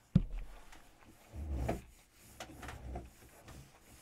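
A glass tasting glass being put down on the table, with a sharp knock just after the start. Softer rubbing and handling noises follow.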